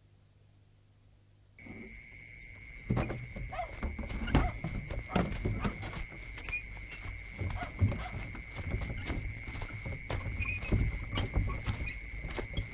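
Night-time insect drone, a steady high-pitched tone beginning about a second and a half in, joined from about three seconds by irregular thuds and rustling.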